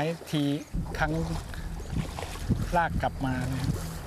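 Water sloshing and swishing as a bamboo-poled mesh drag net is pulled through knee-deep muddy water, with a low rumble setting in just under a second in.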